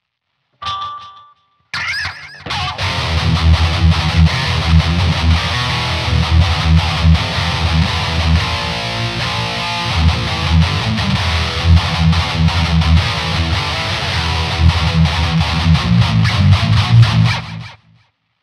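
Dean electric guitar played through a distorted amp with a Dunlop Tortex .88 mm green pick. A single short note sounds about half a second in, then from about two seconds in comes continuous heavy riffing with strong low rhythmic notes, which stops just before the end.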